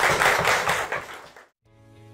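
Audience applauding, cut off suddenly about one and a half seconds in; soft music with held notes fades in just after.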